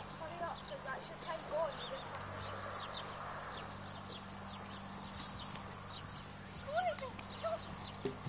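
Hoofbeats of a cob on a soft arena surface, growing louder as the horse approaches a crosspole, with short rising-and-falling calls around seven seconds in.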